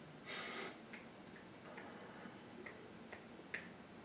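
A person snapping or clicking his fingers: a brief rustle near the start, then a run of about seven faint, evenly spaced clicks, roughly two a second, the last one sharpest.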